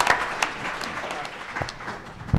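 Audience applauding. The clapping is dense for about the first half second, then thins out and fades away.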